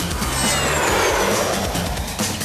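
A whooshing sound effect that swells and fades, its pitch falling, laid over background music with a beat.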